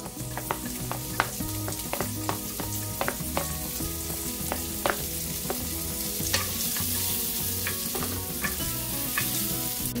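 Chopped green onion whites sizzling steadily in a hot stainless steel pan of bacon fat, with scattered sharp clicks and taps from a wooden spatula scraping them off a plastic cutting board into the pan.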